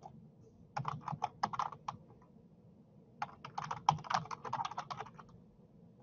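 Computer keyboard typing in two quick runs of keystrokes, a short run about a second in and a longer one from about three seconds in, typing a web address.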